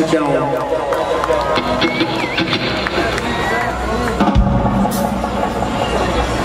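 Live reggae rock band playing under crowd cheering and shouts; a heavier bass line comes in about four seconds in.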